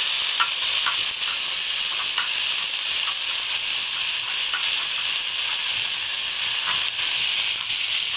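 Cauliflower florets and potato cubes frying in hot oil in a karahi: a steady sizzle with a few small pops scattered through it.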